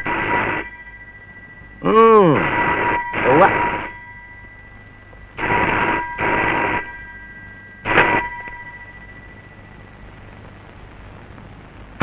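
Red rotary-dial desk telephone's bell ringing in pairs of short rings, then stopping after a brief final ring about eight seconds in.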